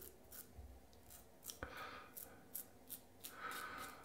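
Rex Supply Ambassador double-edge safety razor with a Wizamet blade cutting stubble through lather on the upper lip: a quick series of short, faint scraping strokes.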